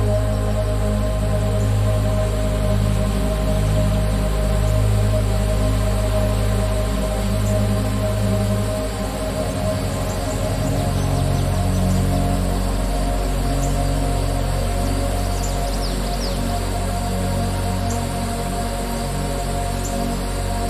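Slow ambient background music of long held tones over a steady low drone.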